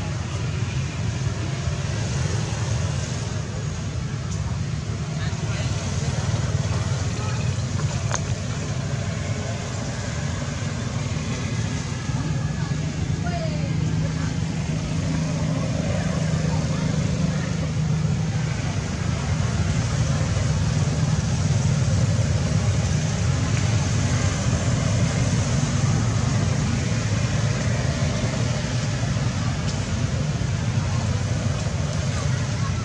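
A steady, low outdoor rumble with a faint hiss above it.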